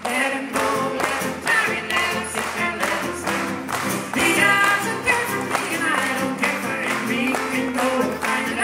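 Instrumental break in a live folk song: a fiddle plays the melody over strummed acoustic guitar, with hand claps on the beat about twice a second.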